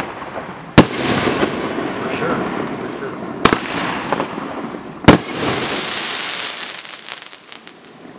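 Aerial fireworks going off: three sharp bangs, about a second in, midway and just past five seconds, each followed by hissing and crackling as the stars spread, with a long crackle after the last that fades away near the end.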